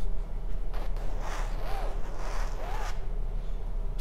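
Room noise: rustling and shuffling over a steady low hum.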